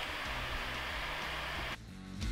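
Steady hiss of background noise from the narration recording, cutting off sharply shortly before the end. Background music starts just as it drops away.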